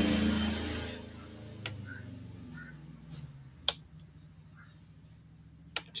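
A low hum fades out in the first second. Then come three sharp, single clicks about two seconds apart, typical of a computer mouse button pressed while drawing lines in Paint, over a quiet background.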